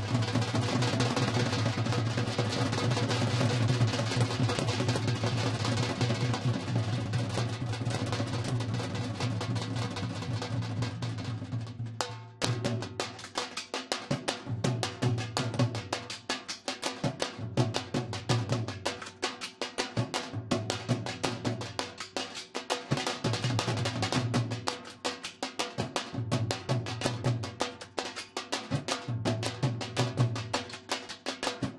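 Several dhols, Punjabi double-headed barrel drums beaten with sticks, played together in a fast continuous roll for about the first twelve seconds, then breaking into a rhythm of distinct strokes with short gaps.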